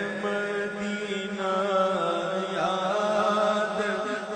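A naat (Urdu devotional poem) chanted by a man's voice in long, ornamented melodic phrases over a steady low drone.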